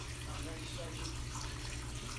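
Steady rush of water circulating through a large reef aquarium, with a low steady hum underneath.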